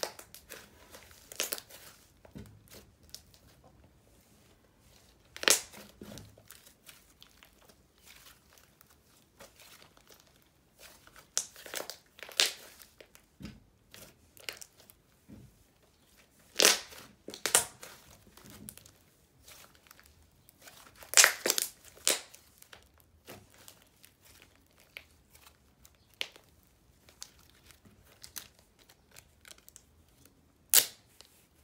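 Hands squishing, pressing and stretching a butter slime, giving irregular sticky crackles and sharp pops with quieter squishing between, the loudest pops coming in close pairs every few seconds.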